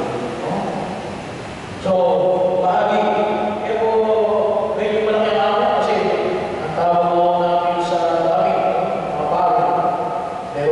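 A man's voice chanting or singing slowly into a microphone, holding each note for a second or more, picked up through the amplification. It grows louder about two seconds in.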